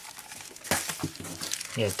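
Thin clear plastic comic bag crinkling and rustling as a comic book is slid into it, with a louder rustle under a second in.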